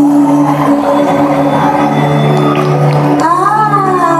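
Live band music with steady held keyboard chords and some audience noise under them; about three seconds in, a woman's voice comes in with a wavering, ornamented held note.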